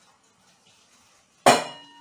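A single sharp clank of metal kitchenware about one and a half seconds in, ringing briefly as it fades.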